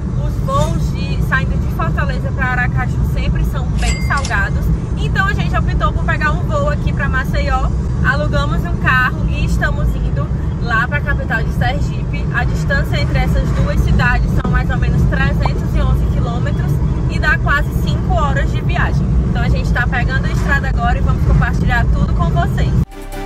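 Steady low road and engine rumble inside a moving car's cabin at road speed, with a woman talking over it throughout.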